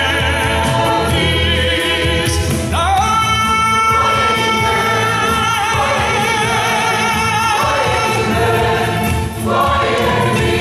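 Mixed choir singing, the held notes wavering with vibrato; a short break near the end before a new phrase begins.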